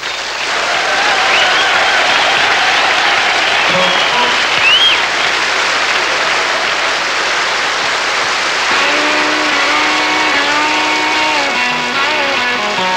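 A theatre audience applauding and cheering, with a few whistles in the first few seconds. About nine seconds in, sustained instrument notes begin to sound under the applause as the band starts to play.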